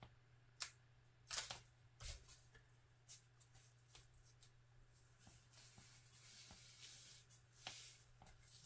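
Faint rustles and light taps of painter's tape being handled, laid and pressed onto foam board, a few short ones spread through, over a low steady hum.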